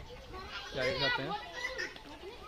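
Speech only: a child's voice talking and a man saying a brief word.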